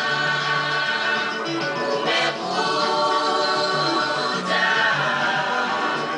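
Babembe choir singing, many voices together on long held notes, with short breaks between phrases.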